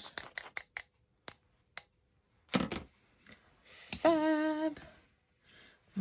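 Metal scissors tapped against a fan brush handle to flick gold paint splatters: a quick run of light clicks, about five a second, then two single clicks. A short hummed note follows about four seconds in.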